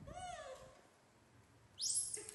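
A baby macaque gives a short call near the start that rises and then falls in pitch. Near the end comes a louder, very high-pitched squeal that sweeps upward.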